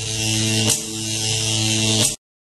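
An electric buzz sound effect: a steady hum-like buzz with hissing static and a short crackle a little under a second in.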